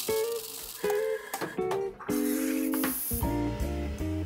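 Background music of plucked acoustic guitar notes, with a bass line coming in about three seconds in. A brief high hiss sounds a little past halfway.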